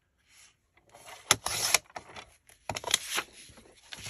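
Sliding-blade paper trimmer cutting a sheet of magazine paper. A sharp click and a short scraping run come a little after one second in, and a second click-and-scrape follows about three seconds in.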